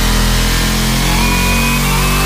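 Cartoon motor sound effect for a head-mounted helicopter rotor spinning up: a loud, steady buzz like a small engine, with thin whining tones stepping higher from about a second in.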